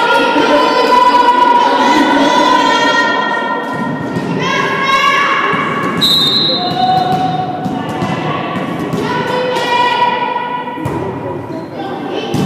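Young voices calling out long drawn-out cheers, held for a second or more at a time and repeated several times, echoing in a sports hall. Thuds of a volleyball being hit and bouncing sound throughout.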